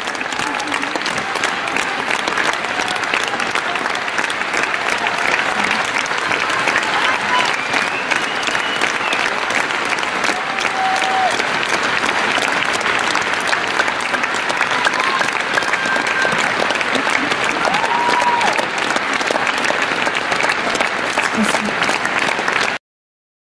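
Large concert audience applauding steadily, with a few shouted voices from the crowd rising above the clapping now and then.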